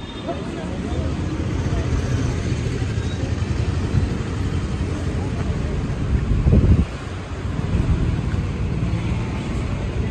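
Steady low street-traffic rumble with wind on the microphone and faint voices, with a brief louder rumble about six and a half seconds in.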